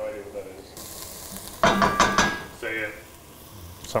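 Diced onion, garlic and chile sizzling in butter and olive oil in an enamelled pot, a steady hiss that starts abruptly about a second in. A man's short vocal sounds break in around the middle.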